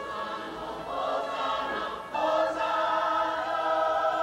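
A choir singing held notes over instrumental backing, swelling louder and fuller about two seconds in.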